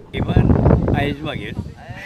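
A man's voice speaking, with a wavering pitch, over steady outdoor background noise.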